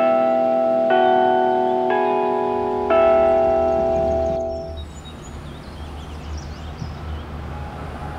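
Clock tower bells chiming four notes of a tune, struck about a second apart, each ringing on and overlapping the next until the sound cuts off about five seconds in. After that there is a quieter steady low background with faint high chirps.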